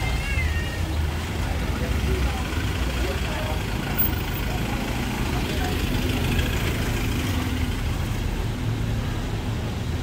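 Steady low rumble of outdoor background noise, with faint voices now and then, loudest briefly near the start.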